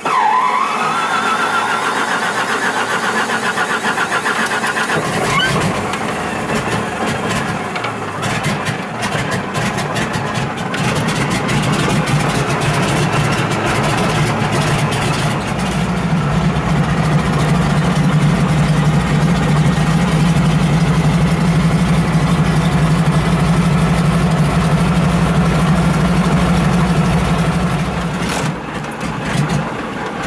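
De Havilland DHC-2 Beaver's Pratt & Whitney R-985 nine-cylinder radial engine being started: a whine rising in pitch as it cranks, then the engine catches about five seconds in and runs, settling into a steady low running note about halfway through. Heard from inside the cockpit.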